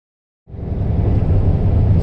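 About half a second of silence, then the steady engine and road rumble inside a moving truck's cab fades in and runs on.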